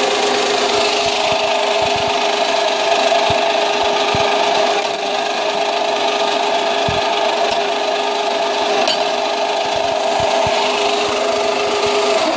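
Homemade black walnut cracking machine running: a repurposed winch motor turning a shaft with welded teeth through its gearing, a very loud steady grinding whine with a steady hum under it and scattered knocks. The noise comes mostly from the gearing.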